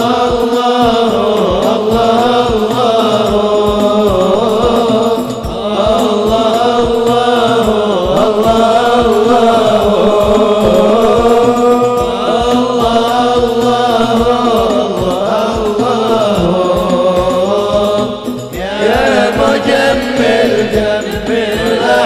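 Male voices singing an Arabic sholawat, a devotional song in praise of the Prophet, in long gliding melodic phrases over a fast, steady hand-drum beat. The singing dips briefly between phrases about five seconds in and again near the end.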